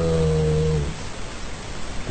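A man's voice holding a steady, drawn-out hesitation sound ('uhm') for just under a second, then a short pause with only a faint steady hiss.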